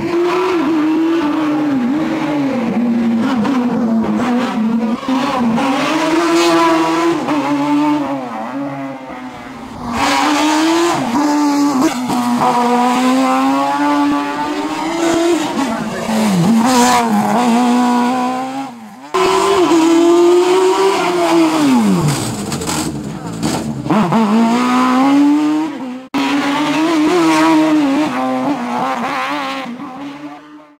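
Small racing car's engine revving hard through a slalom course, its pitch climbing and dropping repeatedly with gear changes and lifts off the throttle. The sound breaks off suddenly several times as one pass cuts to the next.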